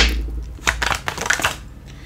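A thump as the tarot deck is knocked against the wooden table, then a run of quick papery clicks as the cards are shuffled and one is pulled from the deck, dying away in the last half second.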